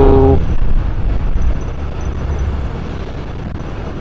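Motorcycle riding along a road: a steady low engine drone with road and wind noise, loudest in the first half second and then a little fainter.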